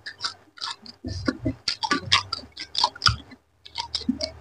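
Close-miked chewing of a person eating a mouthful of rice and curry by hand, heard as quick, irregular clicks, with a short pause about three seconds in.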